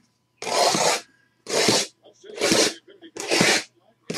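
Plastic shrink-wrap on sealed trading-card boxes being torn and pulled off in four short rips, each about half a second long.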